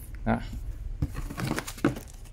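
Handling noise of packing a tool box: the paper instruction booklet and cotton gloves are laid back over the foam insert, giving soft rustles and a few short taps.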